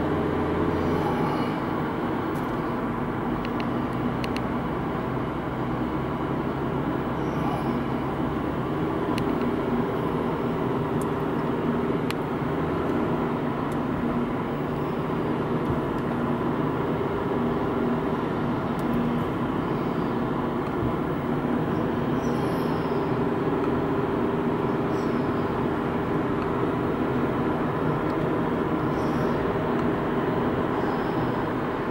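Steady road noise heard from inside a moving car's cabin: a continuous engine drone with tyre rumble on asphalt, unchanging throughout.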